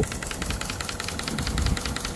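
Small motor of a used-cooking-oil processing rig running steadily, most likely the transfer pump, with a fast, even clatter.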